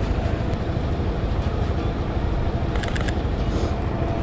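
Street traffic noise with a steady low rumble from idling vehicles close by, and a short run of camera shutter clicks about three seconds in.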